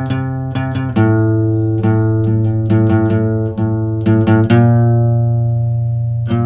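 Instrumental passage of an acoustic emo song: guitar picking notes over a sustained low bass. The chords change about a second in and again around four and a half seconds in.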